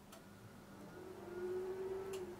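Rubber spatula folding meringue into batter in a glass bowl, with a light click of the spatula against the bowl just after the start. Under it runs a low steady hum that swells about a second in and is loudest near the end.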